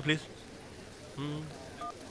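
A single short two-tone keypress beep from a mobile phone near the end, the sound of a button being pressed as the call is cut off.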